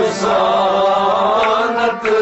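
Men's voices singing a Kashmiri Sufi kalam together in one long chant-like phrase. A rabab and a tumbaknari, the clay goblet drum, accompany them, with a couple of light drum strokes near the end.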